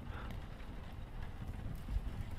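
Faint room noise with a low rumble, in a pause between spoken explanation.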